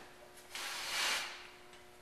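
A man breathing out hard through a pull-up rep: one breathy hiss lasting about a second.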